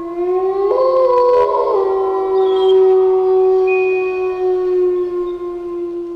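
Eerie, drawn-out howling tones: a low note that rises slightly and then holds, with higher held notes joining about a second in. They fade out together at the end.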